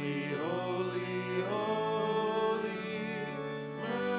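A worship ensemble of piano and acoustic guitars plays a slow hymn, with voices singing long held notes that change pitch a few times.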